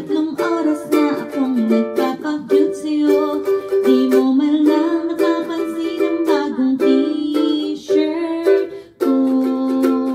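Ukulele strummed in steady chords while a woman sings along, with a brief break just before the last second.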